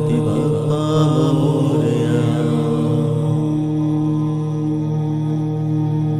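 Devotional Hindu mantra chant music for Ganesha. A last drawn-out, wavering vocal line sounds over a steady drone in the first couple of seconds, then the drone carries on alone.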